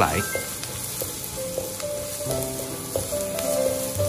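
Minced scallion, ginger and garlic sizzling in oil in a stone-coated wok over low heat, stirred continuously with a spatula, with a few light scrapes of the spatula on the pan.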